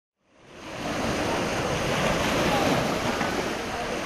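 Small waves washing onto a beach, a steady surf hiss that fades in over the first second, with wind on the microphone.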